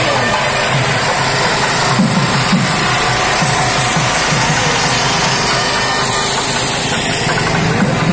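Loud, dense procession sound: music mixed with a steady running engine, such as the engine of a vehicle carrying a lit float.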